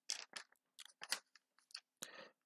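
Several faint, short clicks at irregular intervals.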